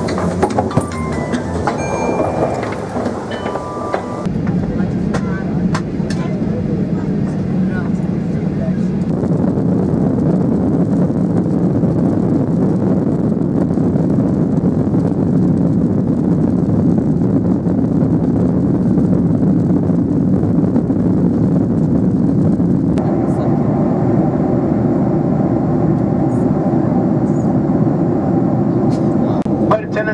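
Steady engine and airflow noise inside a jet airliner's cabin during the takeoff roll and climb, changing in tone about a third of the way in and again later. It is preceded by a few seconds of busier airport sound with short electronic tones.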